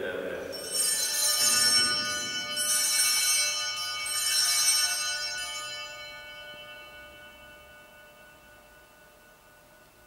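Altar bells rung in three shakes about two seconds apart, each a bright jangle, their ringing fading away over several seconds. They mark the elevation of the chalice at the consecration of the Mass.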